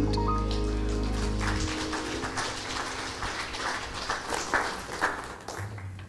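A praise band's final held chord rings out and stops about a second and a half in, followed by a congregation clapping that thins out and fades near the end.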